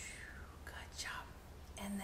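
A woman's breathy pretend snoring, imitating a sleeping bear: two whispery exhaled hisses that fall in pitch. Her voice starts up again near the end.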